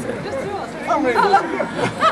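Several people's voices talking at once.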